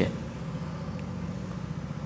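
Steady low background hum with a faint fluttering texture, and a single faint click about a second in.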